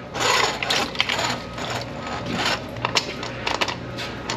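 Steel drain-snake cable scraping and clicking as it is drawn out of a floor drain and fed back into a drum-type drain-cleaning machine, once the grease clog in the drain line has been cleared.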